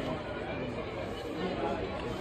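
Background chatter: voices talking continuously, with no clear words.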